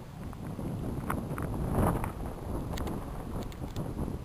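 Wind buffeting the camera's microphone in uneven gusts, a low rumble that is strongest about two seconds in.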